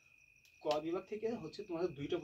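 A man speaking, starting about half a second in, over a steady high-pitched tone that runs on unbroken in the background.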